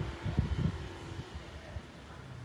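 Wind buffeting the microphone in irregular low gusts, strongest in the first second and then easing to a steady rush.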